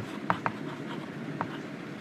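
Chalk writing on a chalkboard: a light scratching as letters are drawn, with a few sharp taps where the chalk strikes the board.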